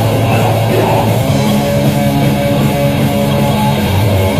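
Metal band playing live: loud guitar-driven heavy metal, a sustained riff whose chord changes about a second in.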